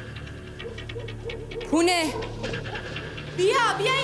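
Two high whimpering cries, each rising then falling in pitch, about two seconds in and again near the end, with short quick breaths between them.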